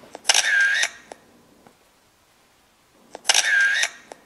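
Camera shutter sound, twice, about three seconds apart: each time a click, then a loud half-second whirr, then a small click. The two are identical.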